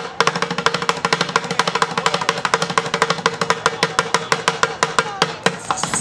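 Street drummer playing upturned plastic five-gallon buckets with sticks: fast, dense rolls of sharp hits, about ten strokes a second, thinning out just before the end.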